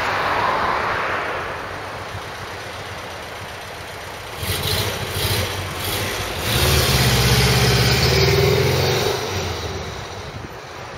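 City street traffic noise, with a vehicle engine's low rumble growing loud about six seconds in and fading again near the end.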